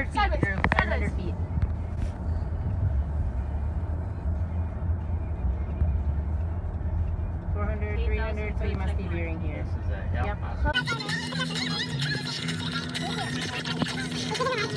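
Road noise inside a moving car's cabin: a steady low rumble, with faint voices about eight seconds in. About eleven seconds in it cuts to a different background with a steady low hum and voices.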